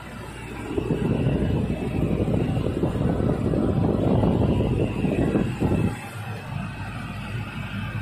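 Massey Ferguson 8732S Dyna VT tractor running as it drives over a field, heard from inside the cab: a steady low engine drone under a rough rumble that grows louder about a second in and drops back near the six-second mark.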